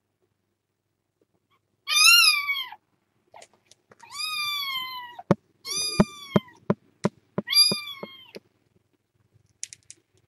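A kitten meowing four times, short high calls that rise and then fall in pitch, the first the loudest. Several sharp clicks sound in the middle stretch, among the later meows.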